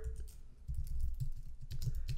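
Computer keyboard typing: a quick run of keystrokes beginning a little under a second in, as a line of code is typed.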